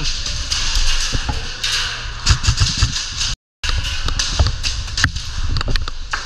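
Airsoft guns firing, heard as irregular sharp pops and knocks over a busy background, with a brief dropout to silence about three and a half seconds in.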